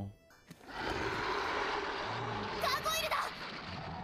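Anime episode soundtrack: a steady rushing rumble of sound effects, with a short high, wavering sound near three seconds in.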